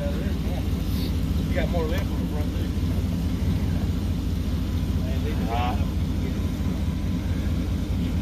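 Pickup truck engine running steadily as the truck creeps along at walking pace, a low even hum, with the rolling noise of a loaded caster dolly being towed over asphalt beside it.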